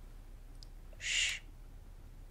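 A single short breathy hiss about a second in, over a faint steady low hum.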